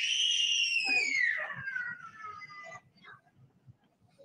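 A child's long, high-pitched scream that slides steadily down in pitch and trails off after about two and a half seconds.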